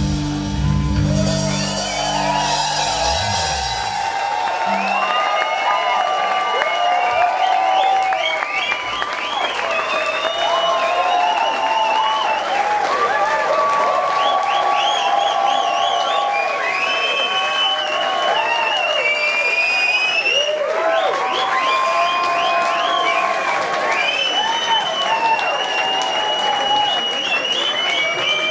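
A live rock band's final chord rings out and stops about four seconds in. After that comes a crowd cheering, whooping and applauding.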